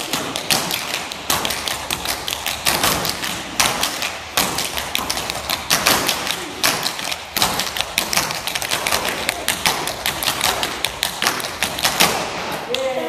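Several dancers' metal-plated tap shoes striking a wooden floor in a fast, continuous run of taps and heel drops, many strikes a second.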